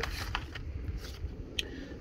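Quiet handling of a plastic zip-top bag and paper forms: a couple of light crinkles, one early and one near the end, over a low steady background rumble.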